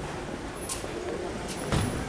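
Sedans rolling slowly up over paving stones at low engine speed, a steady low running noise with faint voices under it. A sharp knock sounds near the end.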